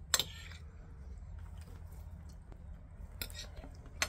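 A fork clinks sharply against a plate once, just after the start. It is followed by faint fork-on-plate scraping and a few soft clicks later on, over a low steady background rumble.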